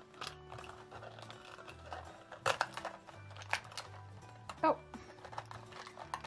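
Plastic Hatchimals toy egg shell being cracked and peeled apart by hand: a few sharp snaps and clicks, the loudest about two and a half and four and a half seconds in, over background music with a steady low beat.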